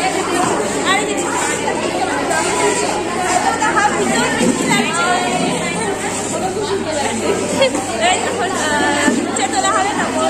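Several people talking at once in a large, echoing hall: continuous overlapping chatter, with no single voice standing out.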